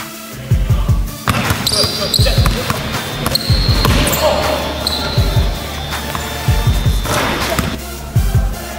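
Background music with a steady bass beat, overlaid from about a second in until near the end by basketball court sound: a ball dribbled on a hardwood floor, high squeaks and voices.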